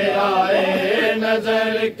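A group of men chanting a noha, a Shia lament for Karbala, in unison and without instruments, holding long notes that shift in pitch, with a brief break near the end.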